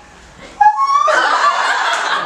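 A group of teenage girls bursting into loud laughter about half a second in, after a brief lull.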